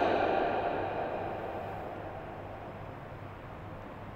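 The reverberation of a man's amplified voice dying away in a large, echoing hall, fading over about three seconds and leaving a faint steady low hum and hiss.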